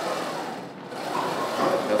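A lifter straining through one rep on a plate-loaded squat machine, the machine's moving carriage making a steady mechanical noise, with his strained effort rising toward the end.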